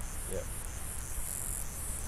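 A steady, high-pitched chorus of insects chirring in the grass.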